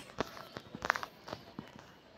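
A few light, sharp taps or clicks over low room noise, the loudest about a second in.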